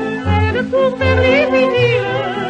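A 1949 78 rpm record of a French popular song: a woman singer with heavy vibrato and orchestral accompaniment, with a bass line pulsing underneath.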